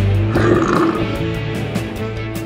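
Rock backing music with a steady beat and guitar, with a short growling roar sound effect about half a second in that lasts about half a second, laid over the music as an edited effect.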